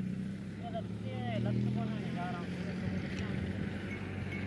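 An engine running steadily with a low, even hum. A faint voice calls out during the first half.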